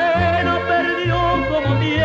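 Instrumental mariachi music: wavering, sustained melody lines, likely violins, over a bass line that steps to a new note about every half second.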